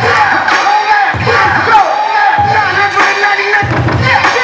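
Hip hop track played loud by a DJ for a dance battle, a heavy bass hit landing about every 1.2 seconds, with the surrounding crowd's voices mixed in.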